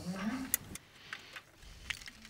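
A pause between speakers in a quiet room: a faint voice trails off at the start, then a few sharp clicks and softer ticks from handheld microphones being lowered and raised.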